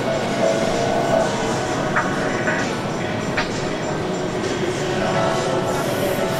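A plate-loaded push sled dragged across gym turf by a rope, giving a steady scraping rumble, with voices in the background.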